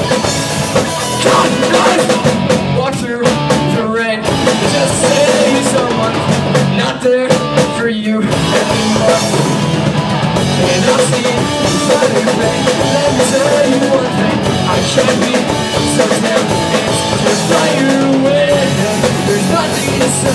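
Live rock band playing loud: a drum kit with guitars through amplifiers, with a couple of brief breaks in the first half.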